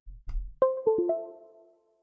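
A few low thumps, then a computer's device chime: about four quick ringing notes in half a second that fade away. This is the sign of USB hardware being unplugged or reconnected.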